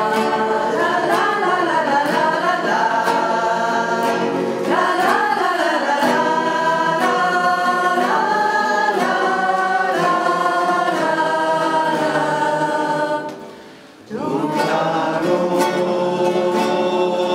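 A small mixed group singing a Christmas pastoral carol together, accompanied by strummed acoustic guitars. The sound breaks off briefly about thirteen seconds in, then the singing picks up again.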